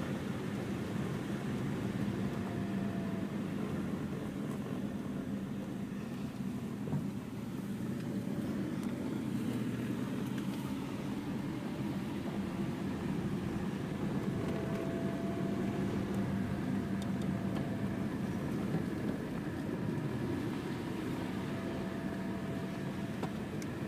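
Car driving steadily, its engine and tyre noise heard from inside the cabin as an even, low hum.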